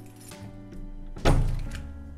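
A single heavy door thunk about a second in, fading out over half a second, as the entrance door is worked open, over background music.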